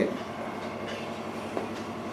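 Steady hiss of room background noise in a pause between sentences, with a brief faint vocal sound right at the start.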